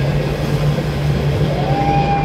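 Live amplified electric guitars and bass holding a loud, steady, distorted drone, with a high tone sliding up and holding about a second and a half in.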